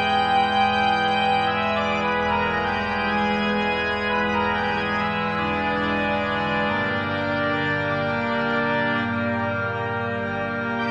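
Organ music playing long, held chords, with a change of chord about seven seconds in.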